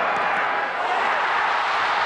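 Large football stadium crowd making a steady roar during a field goal attempt, swelling slightly about a second in.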